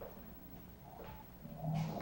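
Faint steady hum and low background noise on a silent remote audio line, with a woman's voice starting to speak near the end.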